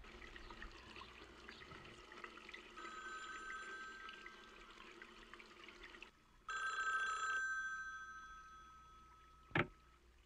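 Electronic telephone ringer of a Duofone 101 speakerphone giving a steady two-tone ring. It is faint at first over a running tap, then rings loudly once more about six and a half seconds in and fades away. A single sharp click follows near the end.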